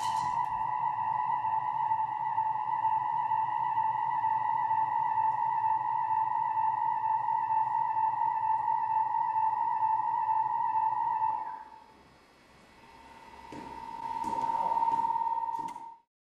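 A single steady high tone with a few faint overtones, held level, then dying away about three-quarters of the way through. It swells back up and cuts off suddenly at the end.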